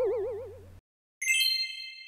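An edited-in sound effect for the channel's logo card: a wobbling, warbling tone fades out, then a bright chime rings out once just over a second in and dies away slowly.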